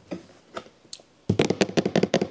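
A rapid run of sharp clicks and knocks, about ten in a second, starting a little past halfway, from a cardboard-boxed Swiffer WetJet mopping kit being handled and its plastic parts knocking inside. Before that, only a few faint clicks.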